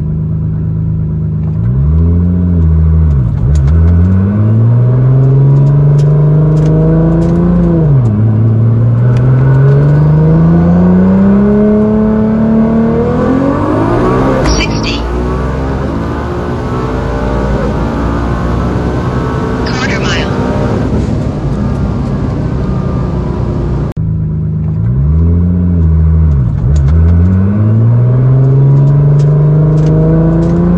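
Heavily turbocharged Nissan GT-R R35 twin-turbo V6 on twin Precision 64 mm turbos accelerating flat out, its pitch climbing and dropping sharply at each upshift. At top speed a loud rush of wind joins it, with two short hissing bursts, before the engine note falls away as the car slows. After an abrupt cut near the end, the same hard acceleration with upshifts begins again.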